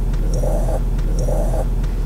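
Ford Super Duty diesel pickup idling heard from inside the cab, a steady low rumble. Over it a large dog breathes heavily in slow pants, a little more than one a second.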